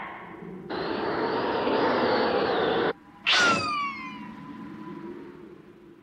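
Anime magical sparkle sound effect for a teleport appearance: a dense shimmering noise held for about two seconds, cut off suddenly. A quick whoosh follows with falling whistle tones, fading into a thin ringing tone.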